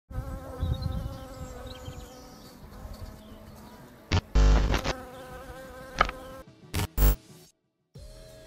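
Cartoon bee buzzing sound effect: a steady buzz that stops about six and a half seconds in. It is broken by a few loud sharp hits, the loudest a half-second noise just after four seconds, with others near six and seven seconds.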